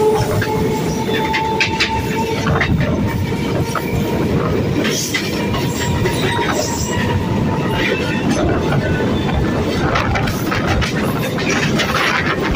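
Two passenger trains passing each other at speed on adjacent tracks, heard from the open door of one of them: a loud, steady rushing rumble of coaches and wheels, with repeated clacks of wheels over rail joints and a faint high whine in the first few seconds.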